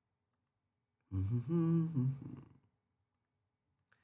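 A person's voice humming briefly, a short hum in two parts starting about a second in and lasting about a second and a half, with near silence around it.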